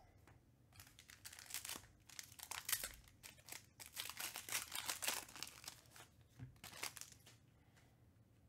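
Trading-card pack wrapper being torn open and crinkled by hand: a run of crackly tearing and crinkling rustles, loudest in the middle, fading out near the end.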